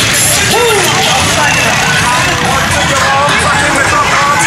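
Loud parade crowd din: many voices talking and calling out over music, with four-wheelers passing on the street.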